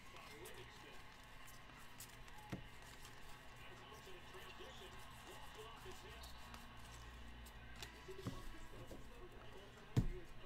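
Quiet room with faint handling of a stack of trading cards being sorted and set down, with a few light taps, the clearest about two and a half seconds in. A faint voice murmurs in the background in the middle.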